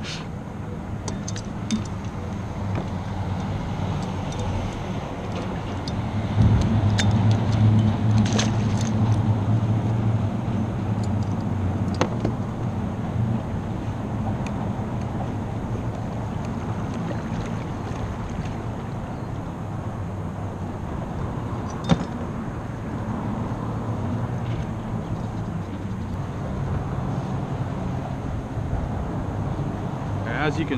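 Steady low engine hum, louder from about six seconds in until about thirteen, with a few sharp clicks over it.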